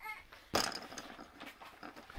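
Plastic arrow of a Twister spinner board flicked and spinning: a sharp snap about half a second in, then a whirring rattle that fades over about a second and a half.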